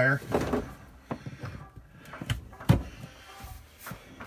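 A heavy 240-volt dryer cord plug being handled and pushed into the socket of a wall-mounted plastic switching box: a few separate clicks and knocks, the loudest a sharp knock a little before three seconds in as the plug seats.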